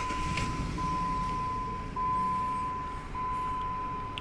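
2005 Jeep Grand Cherokee engine idling, heard from inside the cabin, with a misfire and loss of power that the mechanic puts down to a head gasket or intake gasket leak letting antifreeze into the combustion chamber. Over it a steady high warning chime sounds in long tones broken by short gaps about every second, the open-driver's-door warning.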